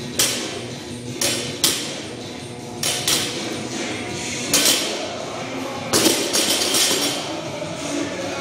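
Sharp knocks and bangs, several of them close together in pairs about every second and a half, with a cluster near the end, over background music.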